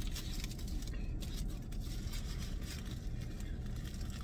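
Steady low hum of a car cabin, with faint crinkling of a paper-and-foil sandwich wrapper being handled.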